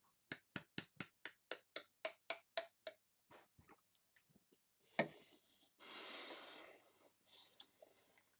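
Close, wet mouth clicks from chewing a mouthful of dry ground cinnamon: a fast, even run of about a dozen in the first three seconds, then scattered ones. There is a sharp click about five seconds in and a breathy rush of air a second later.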